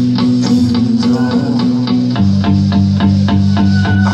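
Live band music heard from the audience: electric guitar and a held bass line over a steady drum beat with quick, regular cymbal or hi-hat hits.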